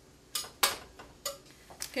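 A few sharp clicks and knocks of kitchen utensils and dishes being handled, about five over two seconds, the loudest about half a second in.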